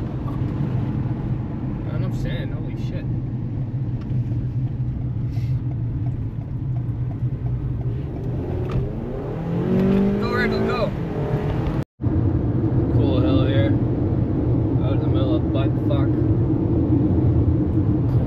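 Steady low road and engine noise inside the cabin of a car cruising on a highway. The sound cuts out for an instant about two-thirds of the way through.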